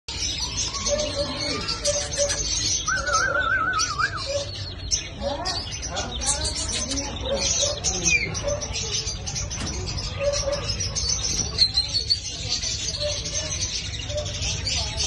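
Many small cage birds chirping and twittering at once, without a break, with a warbling trill about three seconds in.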